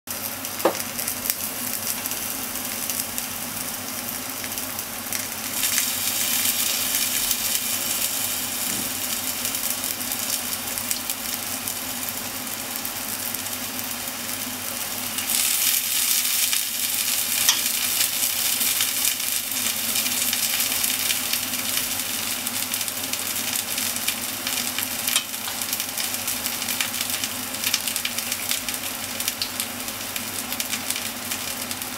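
Daikon steaks frying in an oil-filled pan: a steady sizzle that grows louder about five seconds in and again about halfway through. A short clink near the start.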